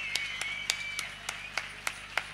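Scattered hand claps from a small audience, a few separate claps a second rather than full applause, with a faint high wavering tone running beneath them.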